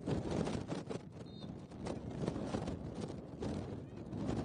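Outdoor pitch-side noise: a rumbling haze with many irregular soft knocks, and one brief high chirp about a second in.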